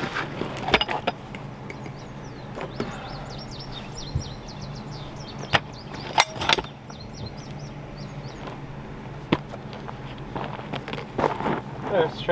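Handling of a jackhammer and its hard plastic carry case after a bit change: a few scattered sharp clicks and knocks, with a steady low hum underneath and a run of high chirps near the start.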